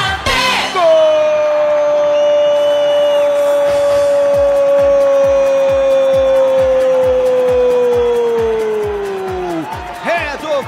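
A Brazilian radio football commentator's long drawn-out goal shout, one held note for about nine seconds that sags in pitch and drops off near the end as his breath runs out. A steady thumping beat of about three a second comes in under it a few seconds in.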